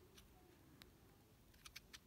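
Near silence, with a few faint clicks of a mobile phone being handled: one near the middle and three in quick succession near the end.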